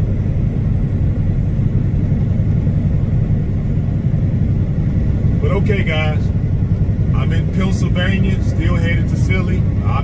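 Steady low rumble of a truck's engine and tyres, heard inside the cab while cruising at highway speed. A man's voice comes in briefly about halfway through and again near the end.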